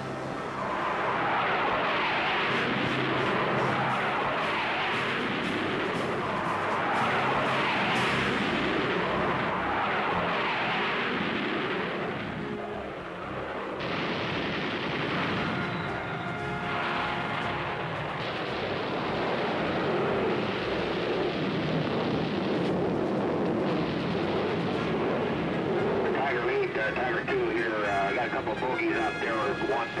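Jet fighter engines roaring in a series of swelling and fading passes as the aircraft fly by. Near the end, pilots' radio voices come in over the noise.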